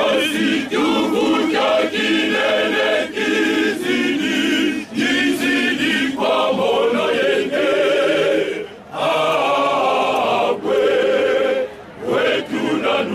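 Choir of men singing a hymn together, unaccompanied, in phrases with wavering held notes and a short pause about three-quarters of the way through.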